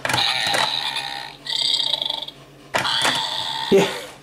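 Ugglys Pet Shop toy playset's built-in electronic sound effects, set off by pressing the fish tank on top: three short gross-out noises in a row from the toy's small speaker, the middle one a steady high tone.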